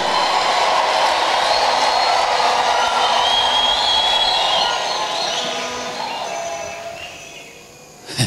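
A large congregation cheering and shouting, loud and steady at first, then dying away over the last three seconds.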